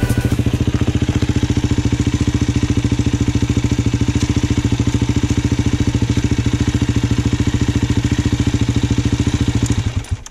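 Dirt bike engine idling with a fast, even thump, cutting off at the very end.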